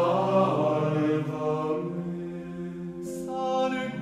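Slow sung chant with long held notes that change pitch every second or two.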